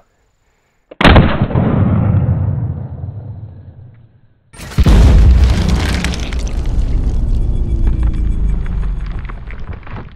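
A single 12-gauge shotgun shot about a second in, fading out over a few seconds. From about halfway comes a second, deeper boom, louder and fuller, that fades slowly to the end.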